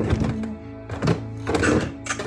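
Electronic keyboard holding sustained notes, with several sharp thunks of something knocking close to the microphone: one at the start, one about a second in and another shortly after.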